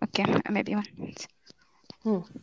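Speech only: a voice talking over a video call for about the first second, then dying away.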